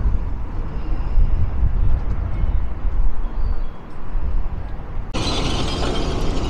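Outdoor street ambience dominated by a low, uneven rumble, typical of wind buffeting a handheld microphone. About five seconds in it cuts abruptly to a louder, brighter rushing noise.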